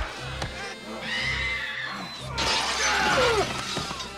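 Film soundtrack of a street fight: music with a steady low beat, a high cry about a second in, then a loud shattering crash with a falling cry about two and a half seconds in.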